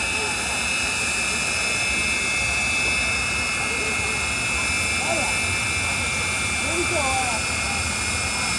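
Jet turbine of the Aftershock jet-powered fire truck running with a steady high whine, spooled up on the start line.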